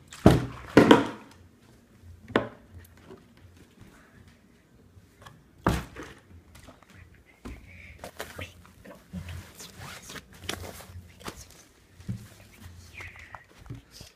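An orange juice bottle tossed in a flip lands with two loud knocks less than a second apart, then a few fainter knocks and handling noises follow.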